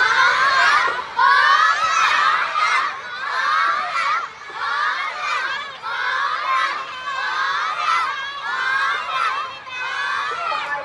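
A crowd of young children shouting and cheering, many high voices over one another, swelling and dipping in waves.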